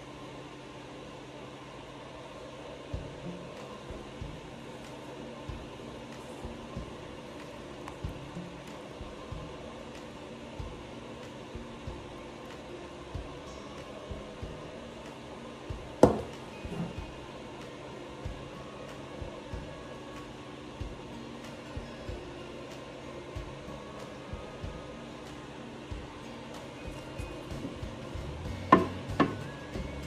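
Light clicks and knocks of soap-making containers and tools being handled over a steady low hum, with one sharper knock about halfway and a few louder knocks near the end.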